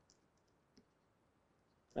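Faint, scattered clicks of a stylus tapping and scraping on a pen tablet during handwriting, about five short ticks over the two seconds.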